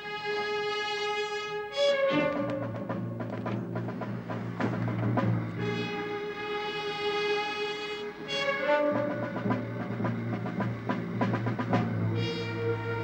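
Dramatic orchestral underscore with timpani and held chords that shift about every three seconds.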